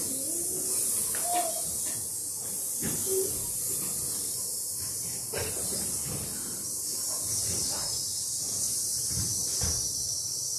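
Steady, high snake-like hissing for a snake played by a line of children, with a few faint knocks beneath it.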